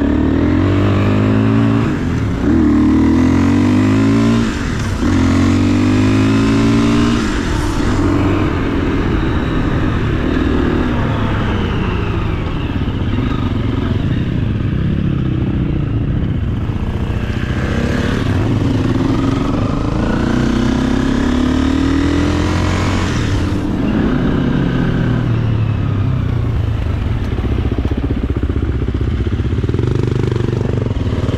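Enduro dirt bike engine running under load as the bike rides along, revving up through the gears in several rising sweeps in the first few seconds and again later, then holding a steadier pitch.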